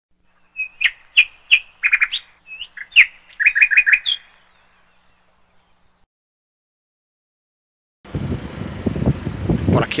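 A small songbird chirping: a quick series of short, high chirps, some in rapid runs of four or five, over about the first four seconds. Then a pause, and from about eight seconds in a steady outdoor noise begins.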